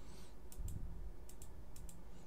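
Half a dozen light clicks from a computer being worked, mouse and keys, coming closer together near the end.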